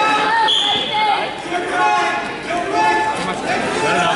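Voices of spectators and coaches in a gym, with one short, high referee's whistle blast about half a second in, signalling the start of a wrestling bout.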